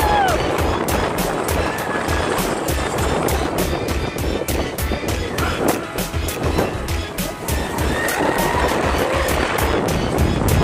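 Roller-coaster mine car running along its steel track, the wheels clacking about four to five times a second over a steady low rumble. Music plays along with it.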